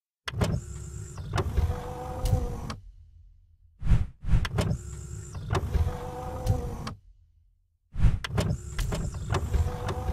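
Mechanical sliding sound effect, a motor-like whir with clunks, played three times, each about three seconds long, with short silent gaps between passes.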